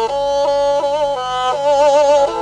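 Kyl-kobyz, the Kazakh two-string horsehair fiddle, bowed in a traditional melody: notes stepping every few tenths of a second with vibrato, two notes sounding together.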